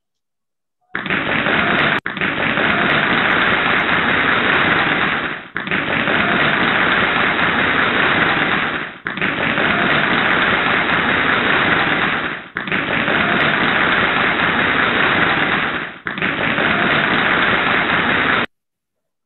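Loud, harsh, static-like noise, the badly distorted audio of a teaser clip played over a video-call screen share, with no tune or voice coming through. It comes in about a second in and runs in stretches of about three and a half seconds, each broken by a short dip.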